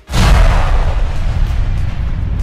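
A loud editing sound effect: a sudden booming rush of noise that cuts in abruptly and holds steady.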